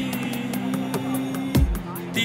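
Temple festival music: a held melody over a steady drone, with a drum stroke about a second and a half in.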